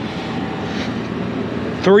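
Steady running sound of the motorhome's Ford 6.8-litre Triton V10 gas engine at idle.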